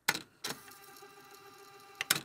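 A brief click, then a sustained ringing tone with many overtones that starts abruptly about half a second in and slowly fades.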